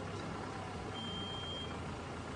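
A steady low background hum with a single high-pitched beep, lasting under a second, about a second in.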